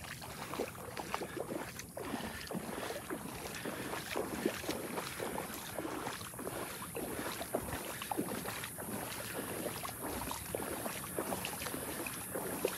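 Footsteps wading through shallow water in a mangrove channel, a continuous run of irregular splashes and sloshes.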